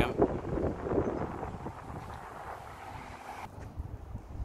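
Wind buffeting the microphone, an uneven low rumble with faint street noise under it, easing off and then dropping away suddenly near the end.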